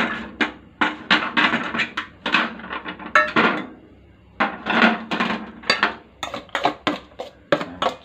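Wooden chopsticks scraping and tapping in a stainless steel pot while a metal steamer tray is moved about, clinking and knocking against it: an irregular run of clicks, knocks and short scrapes.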